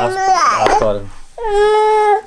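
Toddler crying and whining in two high cries, the second held steady for about a second near the end. He is fussing because he wants the chocolate he has been refused.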